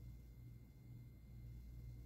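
Near silence with a faint, steady low hum.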